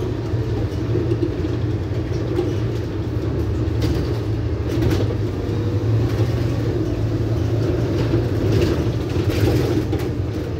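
Diesel bus running under way, heard from inside at the front by the doors: a steady low engine and drive drone with a few short rattles about four, five and nine seconds in.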